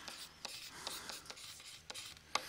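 Faint scratching of a stylus writing by hand on a tablet, with several light ticks between the pen strokes.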